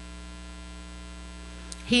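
Steady low electrical mains hum, unchanging throughout.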